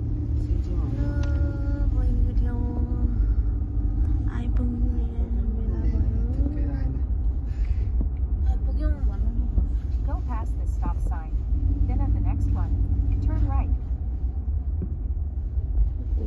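Steady low rumble of road and engine noise inside a car's cabin as it drives slowly along a street.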